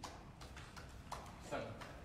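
A few short, light clicks and taps at uneven intervals, with a brief voice-like murmur about halfway through.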